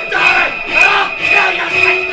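A man yelling wordlessly, battle-cry style, over loud noise from a live audience.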